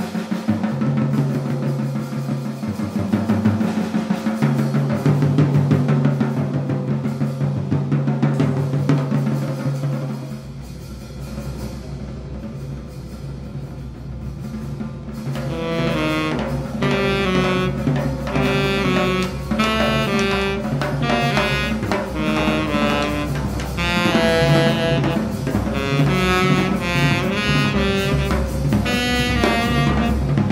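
Live jazz drum kit playing dense, rapid rolls across drums and cymbals, thinning to a quieter low rumble about ten seconds in. About halfway through, a tenor saxophone comes in over the drums with quick runs of notes.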